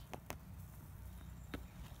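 A few faint, sharp taps over a quiet low hum.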